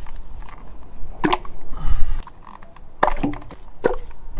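Hands pulling at rubber hoses and plastic fittings on top of a car engine: three sharp clicks or knocks, about a second in, at three seconds and near the end, with a low rumble about two seconds in.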